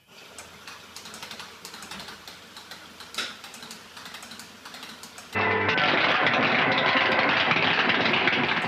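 Replica Strickfaden-style electrical lab apparatus crackling and buzzing, with irregular sharp snaps. About five seconds in, a much louder, denser soundtrack with a duller top cuts in abruptly.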